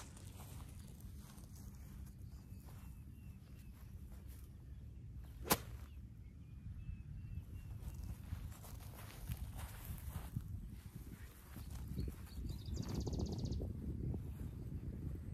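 A 7 iron striking a golf ball off fairway grass: one sharp crack about five and a half seconds in, the loudest sound, over a low steady background.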